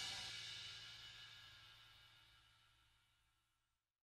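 The last of a crash dying away: a cymbal-like ring that fades out within about a second, then near silence.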